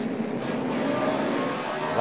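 A pack of NASCAR Cup stock cars with V8 engines running together on the track, a steady engine drone.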